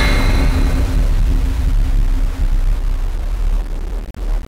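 Loud jump-scare sound effect: a dense, rumbling noise with a heavy low end, slowly fading.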